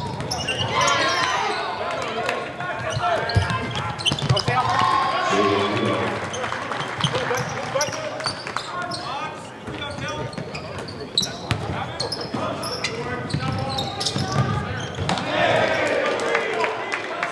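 Live game sound of basketball in a gym: the ball bouncing on the hardwood court in repeated sharp knocks, with players' and spectators' voices calling out and echoing in the hall.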